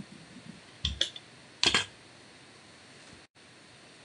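Two short clusters of clicks and knocks, about a second in and again just under two seconds in: a rubber brayer and sheets of paper handled on a tabletop.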